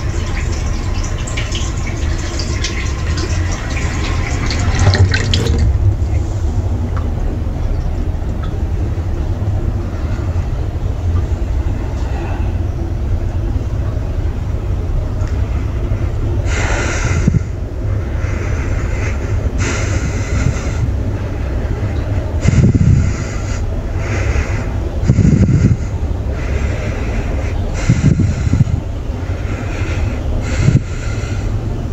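Water running from a kitchen tap into the sink, which stops about five seconds in. After that, several short rushes of noise come and go through the second half over a steady low rumble.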